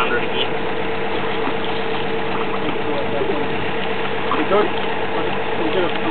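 Engine of a geotechnical drilling rig running steadily at a constant pitch, with faint voices over it.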